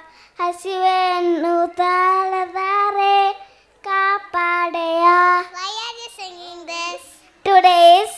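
A young girl singing a song solo and unaccompanied into a microphone, in long held notes phrase after phrase, with short pauses for breath.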